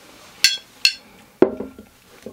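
Glass wine bottles clinking against each other twice, each with a brief ring, then a bottle set down on the table with a duller knock.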